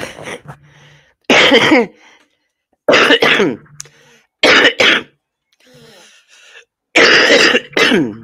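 A woman coughing hard in four bouts about a second and a half apart, after a short laugh.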